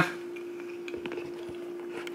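Quiet room with a steady hum and a few faint clicks, about a second and a second and a half in.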